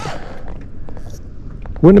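Wind rumbling on the microphone in the pause between a man's words.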